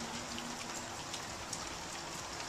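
Light rain falling, with water dripping at irregular intervals from the under-deck drainage collection units: a steady hiss with scattered drip ticks.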